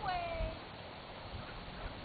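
A single short, high-pitched animal call at the start, rising briefly and then falling in pitch for about half a second.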